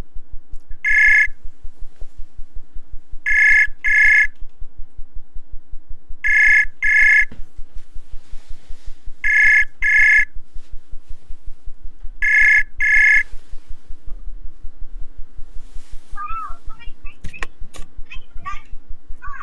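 Outgoing call ringing tone from a web voice-call app while the call waits to be answered: one beep, then four double beeps about every three seconds, stopping as the call connects.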